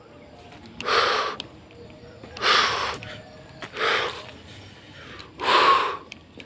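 A man breathing heavily close to the microphone: four loud breaths, about one and a half seconds apart.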